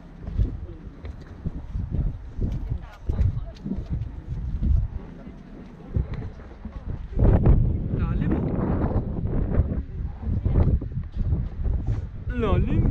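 Wind buffeting the microphone in uneven low rumbling gusts, with people talking, loudest from about seven to nine seconds in.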